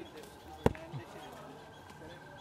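A single sharp knock about two-thirds of a second in, much louder than the surrounding murmur of voices.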